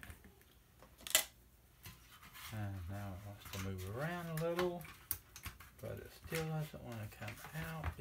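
A single sharp click about a second in, then a man's voice vocalizing without clear words in two long stretches with smoothly gliding pitch.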